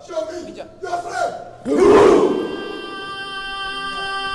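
A group of men shouting a chant together, war-cry style: short shouts at first, a loud outburst about halfway through, then one long held cry.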